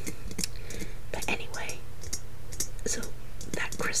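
Fingers tapping on the glass dome of a snow globe: quick, irregular light taps, several a second.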